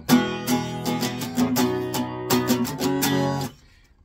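Acoustic guitar strumming an open E major chord (022100), with a quick run of strokes that stops about three and a half seconds in.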